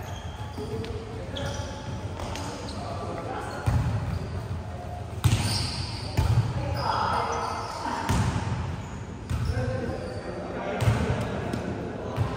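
Volleyball rally in a gym hall: the ball is struck several times with sharp, echoing smacks, among players' shouts and calls.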